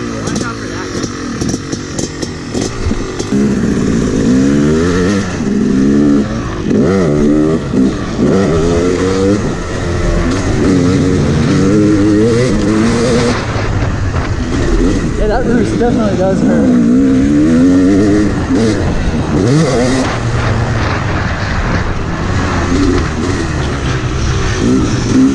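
Two-stroke dirt bike engine being ridden hard, its pitch climbing and dropping back again and again as the rider accelerates, shifts and backs off.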